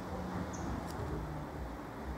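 Steady low background rumble on a close-up phone microphone, with a few faint clicks and one brief high squeak about half a second in.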